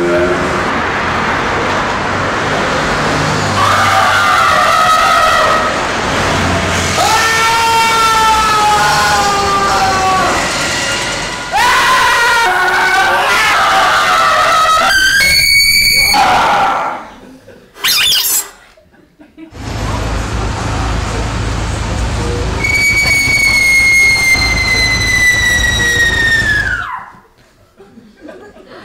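Recorded screams played back over the room's speakers: people screaming one after another, ending in one long high scream that slides slowly down and then drops off sharply, over a steady deep hum.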